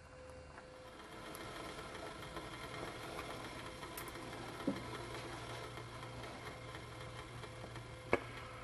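Faint steady background hum and hiss, the hum dropping to a lower pitch about three and a half seconds in, with one soft click near the middle.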